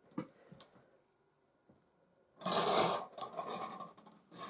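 Small wire bingo cage turned by its hand crank, its balls tumbling and rattling inside for about a second, after a couple of light clicks from handling it.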